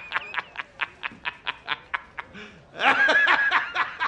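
A man laughing hard in quick staccato bursts, about six a second, swelling into a longer, louder laugh about three seconds in, then breaking back into short bursts.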